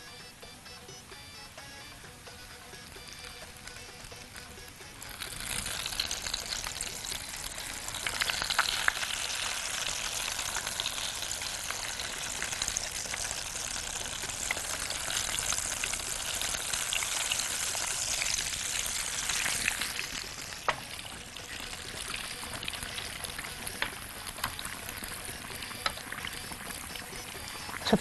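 A breaded hawawshi sandwich frying in hot oil in a pan. A loud sizzle sets in about five seconds in and stays strong through the middle, then settles to a softer sizzle near the end.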